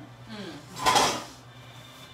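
A short clatter of glassware on a bar counter about a second in, the loudest sound here, between brief murmured replies.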